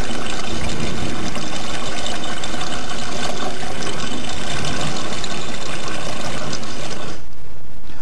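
Water draining out of two upturned plastic bottles through straws in their caps, a loud steady rush that cuts off suddenly about seven seconds in.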